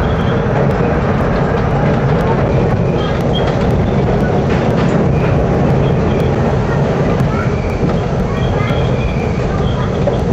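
Subway train running over the Williamsburg Bridge tracks, heard from on board: a loud, steady rumble and rattle of wheels on rail with no pause.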